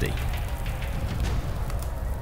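Quiet background music: a low sustained drone with a faint hiss above it.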